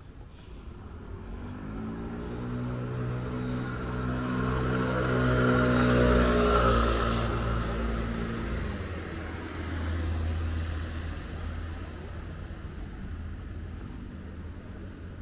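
A car passing on the street: its engine hum builds over several seconds, is loudest about six seconds in with tyre noise on the road, then fades. A second, quieter vehicle goes by about ten seconds in.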